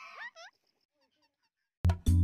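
A bird's harsh call that slides upward in pitch, followed by a second short rising call; then near silence, and music cuts in abruptly near the end.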